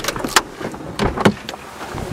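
A car door being opened and people shifting out of their seats: a few sharp clicks and knocks from the door latch and handling, over rustling movement.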